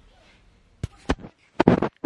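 Close handling noise on the camera microphone as it is swung around: two sharp clicks about a second in, then a loud short burst of knocking and rustling near the end, which stops abruptly.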